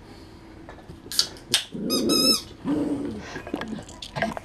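A poodle gives two short barks a little over a second in, then a rubber chicken squeak toy lets out a brief, wavering squawk.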